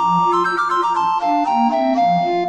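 Three recorders playing a lively Classical trio in F major: the top voice runs in quick notes over a steady, pulsing bass line, and the phrase comes to a close near the end.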